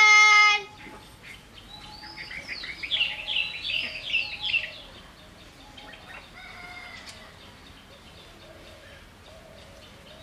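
A child's loud shout for under a second at the start, then birds calling: a run of quick descending high notes for about two seconds, followed by a fainter, longer call a little past the middle.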